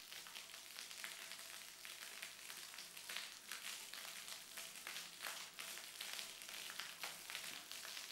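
Faint, steady splashing hiss of a courtyard fountain's water jet falling into its basin.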